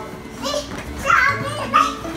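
Toddlers' voices: short high-pitched calls and babble while they play.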